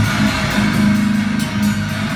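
Heavy rock band playing live, loud guitars and drums, during an instrumental passage with no vocals.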